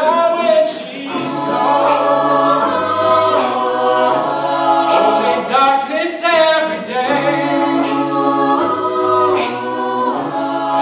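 Mixed-voice college a cappella group singing close-harmony chords over a sung bass line, with short hissy accents recurring through it.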